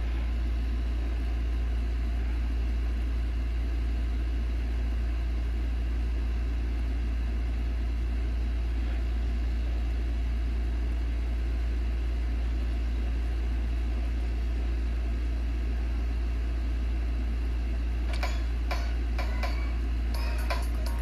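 A steady low hum with an even hiss of noise above it, unchanging throughout. A few faint ticks come in near the end.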